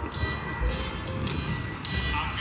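Urban street ambience: traffic rumble and general street noise, with faint music in the background.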